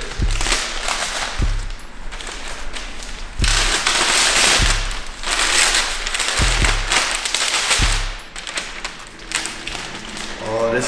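Gift wrapping paper crinkling and tearing as a flat present is unwrapped by hand, in long crackling rips, with a few dull low thumps in between.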